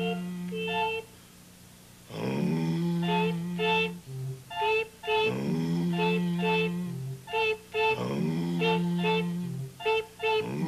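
Two puppet voices performing together as a little tune. One sings a long low note that swoops up at its start, about every three seconds. The other goes 'beep, beep' in short high notes over and between the low notes.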